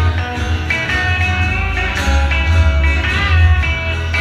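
Live rockabilly trio playing an instrumental passage: electric lead guitar over strummed acoustic rhythm guitar and a plucked upright double bass. Near the end a guitar note bends in pitch.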